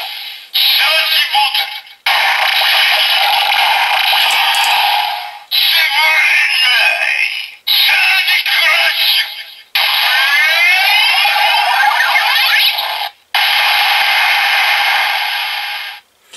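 Bandai DX Sclash Driver toy transformation belt playing its sound set for an inorganic Full Bottle (here the Comic bottle): electronic music, sound effects and announcer-style voice calls through its small built-in speaker. Tinny with no bass, in about six bursts separated by short sudden breaks, with sweeping effects in the middle.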